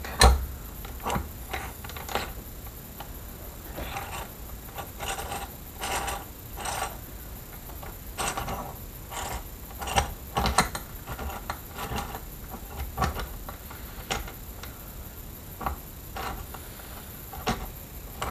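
Steel gearbox gears and shift parts clicking and clinking irregularly as they are fitted by hand into an open engine crankcase half, some knocks ringing briefly.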